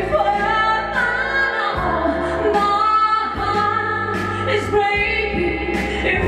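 A woman singing a pop song into a microphone over backing music with steady low notes and a regular beat.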